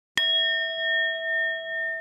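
A bell-like ding sound effect: one sudden strike a moment in, then a clear ringing tone that holds on, swelling and dipping slowly as it fades.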